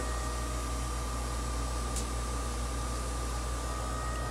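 Variable-speed pool filter pump running with a steady hum and a thin, constant high whine, just after being turned down to a lower speed.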